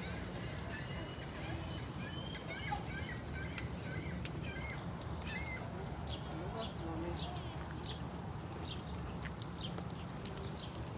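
Outdoor walking ambience: a steady low rumble with faint distant voices and faint high chirps. A run of short chirps comes about twice a second in the second half, and a couple of sharp clicks come midway.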